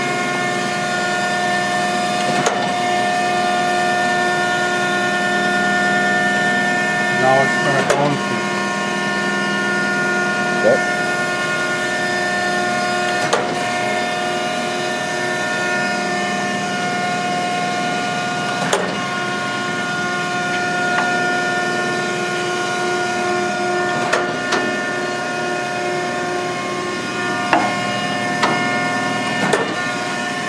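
Mattison surface grinder running with its table traversing: a steady hum of many tones from the machine, with a short knock about every five and a half seconds as the table reverses at the end of each stroke.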